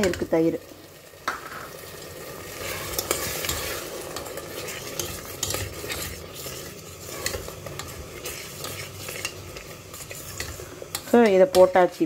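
A steel spoon stirring a thick tomato and nut-paste mixture in a stainless steel pressure cooker, scraping and clinking against the pot, with a faint sizzle of the mixture cooking on the stove.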